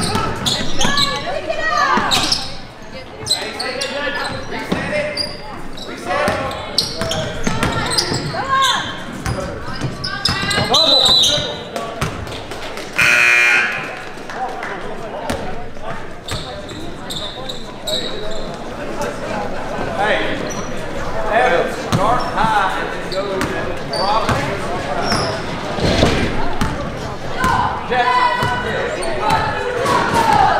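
A basketball being dribbled and bouncing on a hardwood gym floor, with players' and spectators' voices echoing in the large gym. About halfway through, a single tone sounds for about a second as play stops.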